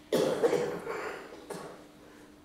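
A person coughing: a loud cough just after the start that tails off over about a second, then a shorter cough about a second and a half in.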